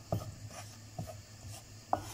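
Wooden spoon stirring and scraping dry flour around a pan as it toasts for flour halva: soft scraping with light taps about a second apart.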